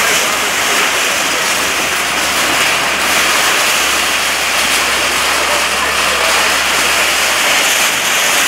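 SANY hydraulic excavator at work demolishing shacks: its diesel engine runs under a loud, steady wash of noise, with faint voices in the background.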